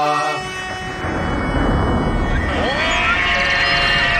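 A sung mantra chant cuts off about half a second in. A deep rumbling music swell follows, with held tones and gliding electronic effects, as in a produced intro sting.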